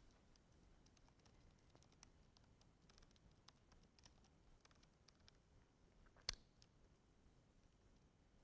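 Faint computer keyboard typing: scattered soft key clicks, with one sharper click about six seconds in.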